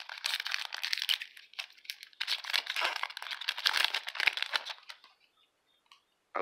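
Foil wrapper of a Magic: The Gathering booster pack being torn open and crinkled, in two spells with a short pause between, stopping about five seconds in.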